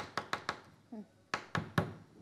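Sharp taps and clicks from hands handling a plastic bag and items on a table: four quick ones, then three more about a second later. A brief vocal sound falls between them.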